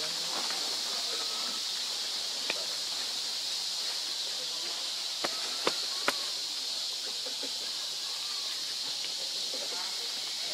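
Steady high-pitched drone of forest insects. A few sharp clicks stand out around the middle.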